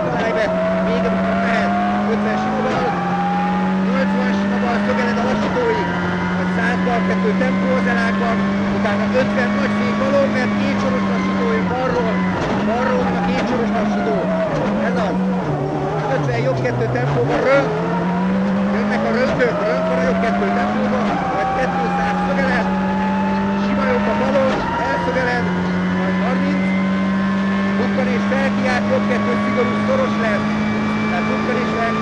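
Ford Focus WRC rally car's turbocharged four-cylinder engine heard from inside the cockpit at stage pace, held high through quick gear changes. About midway the revs drop away as the car slows hard for a tight junction, then climb again through the gears, with a few short sharp cracks along the way.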